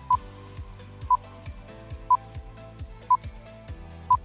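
A quiz countdown timer beeps once a second, four short high beeps, over background music with a steady beat.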